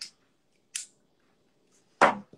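Two short, high breathy hisses: one right at the start and one about three-quarters of a second in. Between and after them it is almost quiet.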